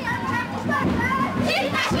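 Many schoolchildren's voices shouting slogans together in a chant.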